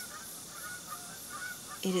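Faint birds calling in the distance: a few short, separate pitched calls over a quiet background. A woman's voice begins right at the end.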